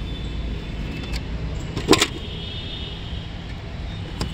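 An SUV's boot floor cover being lowered shut over the jack and tool compartment, giving a sharp double knock about two seconds in. A steady low background rumble runs underneath.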